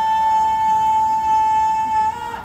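Public-address microphone feedback: a single steady high howl at one unwavering pitch, with a buzzy edge of overtones.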